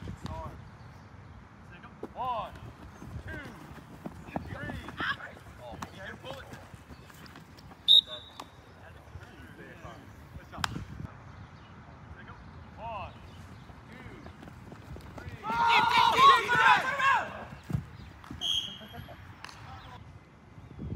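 Players' voices calling out across an open playing field, with a loud burst of several people shouting together about sixteen seconds in. A single sharp click comes about eight seconds in.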